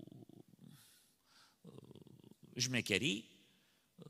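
A man's low, creaky, grumbling voice sound, like a drawn-out throaty 'mmm', twice between spoken phrases. A short spoken word follows about two and a half seconds in.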